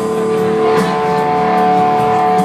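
Live hard-rock band playing loudly, a distorted electric guitar holding long sustained notes over the band. It is heard from far back in the audience.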